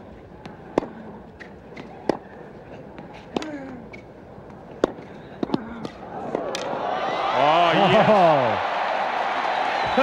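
A tennis ball cracks off the rackets and bounces on the hard court in an irregular rally, one hit every second or so. Near the end of the rally the crowd breaks into loud cheering and shouting, which peaks a couple of seconds later and stays high.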